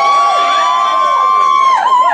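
Audience whooping and cheering: several quick rising-and-falling whoops and one long held "woo" that drops off near the end.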